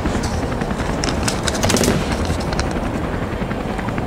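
A folded paper slip being unfolded, crinkling for under a second starting about a second in, over a steady, fast-pulsing low rumble.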